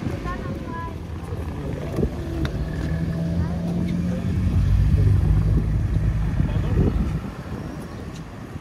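A motor vehicle's engine passing close by on the street: a low hum that swells to its loudest about halfway through and fades near the end.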